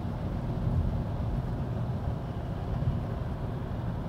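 Steady road and tyre noise inside the cabin of a Volkswagen e-Golf electric car at motorway speed, a low even rumble with no engine note.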